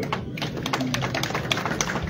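Irregular scattered light taps and clicks over low background noise.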